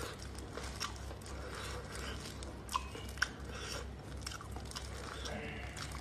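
Plastic-gloved hands and a knife working a piece of cooked pork intestine, giving small wet clicks and squishes, with two sharper clicks near the middle, over a steady low hum.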